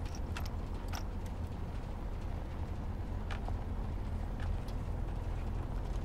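Steady low rumble of a military vehicle driving, heard from inside the cab, with a few short clicks and knocks scattered through it.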